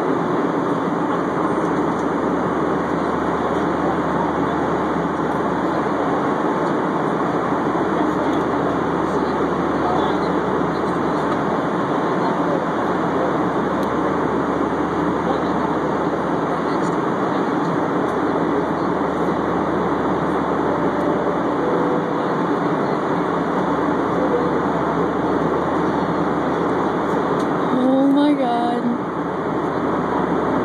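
Steady cabin noise of an airliner in flight: the constant rush of engines and airflow. A brief voice sounds near the end.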